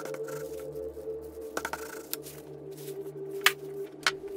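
Background music with steady held notes, over which come a few sharp clicks and taps. The sharpest click is about three and a half seconds in.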